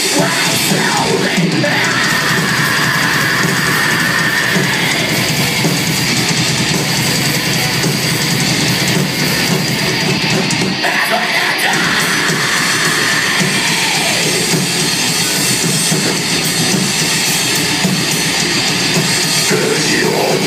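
Heavy metal band playing live: distorted electric guitars over a drum kit, loud and unbroken, heard from the crowd.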